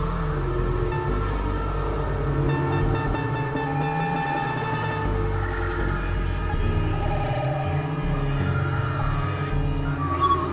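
Experimental synthesizer drone music from a Novation Supernova II and Korg microKorg XL: layered sustained tones over a heavy low drone. A thin high whistle sounds at the start and comes back about five seconds in.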